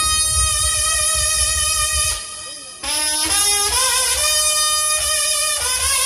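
Live brass band with trumpets, saxophone and sousaphone playing through a stage PA: long held chords over a low bass pulse. About two seconds in it breaks off briefly, then comes back in.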